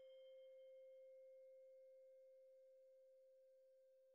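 Faint ringing of a struck bell-like chime: one clear, steady pitch with fainter high overtones, slowly fading away.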